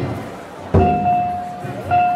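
A festival float's taiko drum beaten in slow single strokes, one at the start and another about three quarters of a second in. After each stroke a steady, high held tone sounds for about a second.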